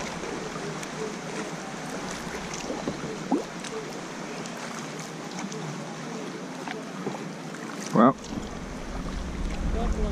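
Kayak being paddled: water splashing and dripping from the paddle blades and lapping at the hull, a steady wash with small ticks of drips. Wind rumbles on the microphone near the end.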